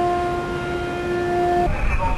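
A steady, held horn tone with overtones that cuts off about one and a half seconds in, followed by a low rumble.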